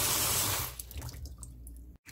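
Cold tap water running hard onto blanched butterbur leaves in a stainless steel mesh strainer, a steady rush that cuts off less than a second in, leaving faint drips and small splashes.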